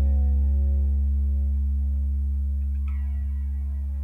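Electric guitar and bass guitar letting a final chord ring out, the low bass note strongest, slowly fading. A faint click comes about three seconds in.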